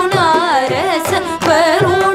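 Carnatic vocal music: women's voices singing a heavily ornamented melody that sways up and down in pitch, accompanied by violin and mridangam drum strokes.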